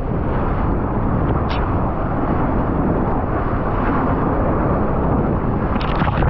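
Rushing water and wind buffeting an action camera mounted on a surfboard riding a wave, with a brief splash of spray about a second and a half in.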